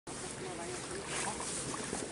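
Outdoor ambience with a steady wind hiss on the microphone and faint, indistinct voices.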